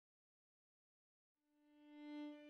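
Silence, then about one and a half seconds in a single held violin note fades in, swelling steadily louder.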